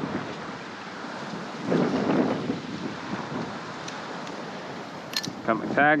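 Wind buffeting the microphone over the wash of small surf, swelling briefly about two seconds in.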